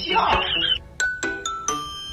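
An edited sound-effect track: a squeaky, high-pitched voice-like sound, then about a second in, a chime of three notes stepping downward.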